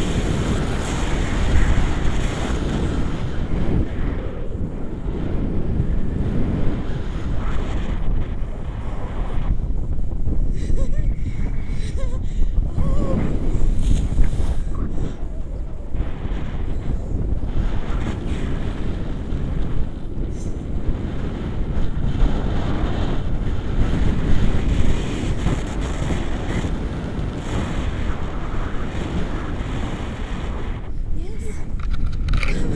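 Wind buffeting the microphone of a camera held out in flight under a tandem paraglider: a loud, rough rumble that swells and eases in gusts.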